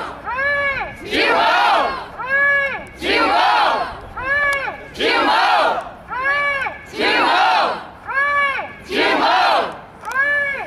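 Call-and-response protest chant. A woman shouts a short slogan through a handheld megaphone, each call rising and falling in pitch, and the crowd shouts back at once. The exchange repeats about every two seconds, five times over.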